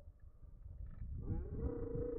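A long drawn-out vocal call starting about a second and a half in, gliding up in pitch and then held, over a low rumble.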